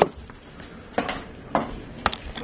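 Small sharp clicks as an iPhone 4 display's flex cable connector is unsnapped from a phone's logic board and the small parts are handled. There are three clicks: one at the start, one about a second in and one about a second and a half in.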